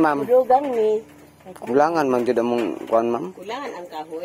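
People talking in short, lively phrases, with a brief pause about a second in.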